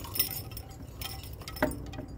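Light metallic jingling and clinking in short flurries, near the start and again about a second in, with one sharper tap about one and a half seconds in.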